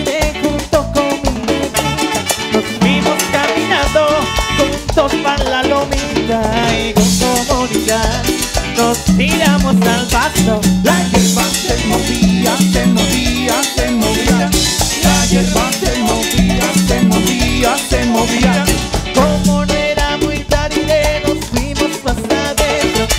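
Live cumbia band playing: electric bass, drums and percussion, electric guitar, keyboard and saxophones, with a steady repeating bass line under a busy rhythm.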